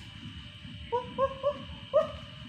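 An animal calling four times in quick succession, short hooting notes that rise at the start, about a third of a second apart, the last the loudest.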